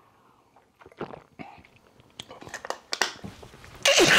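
A man drinking from a plastic bottle: soft gulping and swallowing clicks, then a loud open-mouthed gasp near the end as he reacts to the drink's harsh taste.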